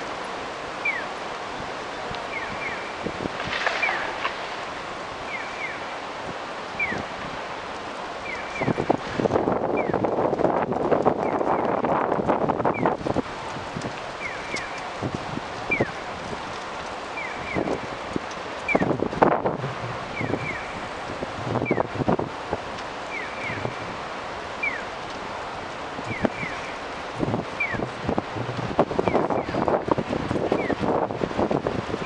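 Electronic pedestrian-crossing signal chirping in a steady repeating pattern: a short high tone and a falling chirp about every second and a half. Underneath is street noise, with a louder rush about a third of the way in and several shorter ones later.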